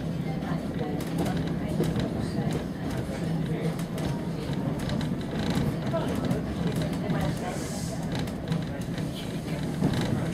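Steady rumble of a moving railway carriage, heard from inside the passenger compartment.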